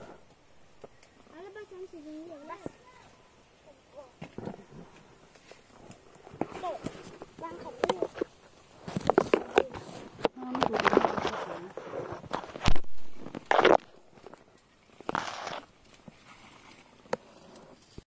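Lemon-tree leaves and twigs rustling and swishing in bursts as branches are pushed aside and lemons are plucked. One sharp snap near two-thirds of the way in is the loudest sound. A faint murmured voice comes early on.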